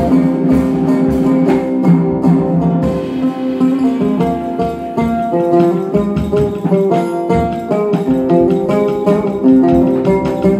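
Oud playing a melody of plucked notes over a drum kit, with frequent drum and cymbal strikes throughout.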